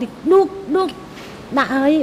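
A woman speaking Khmer in a few short, drawn-out syllables with pauses between them.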